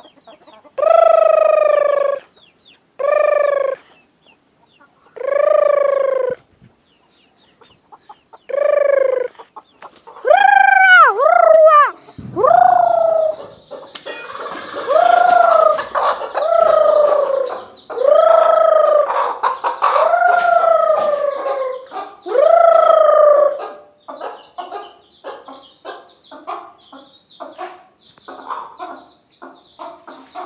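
Chickens calling: a series of drawn-out calls, each about a second long and rising then falling in pitch, at first about one every two seconds with pauses between, then coming close together from about ten seconds in. The last several seconds are short, quick clucks.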